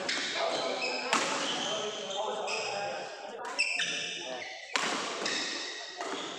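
Badminton rally: rackets smacking the shuttlecock about a second, three and a half and nearly five seconds in, with shoes squeaking on the court floor. Voices run underneath.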